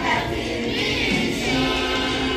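A group of children singing together as a choir.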